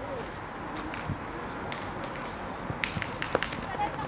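Outdoor background of distant voices and general murmur over gravel, with a few short sharp clicks about three seconds in.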